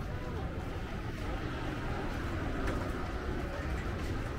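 City street ambience: indistinct voices of passers-by over a steady low rumble of traffic, with a small tuk-tuk driving past.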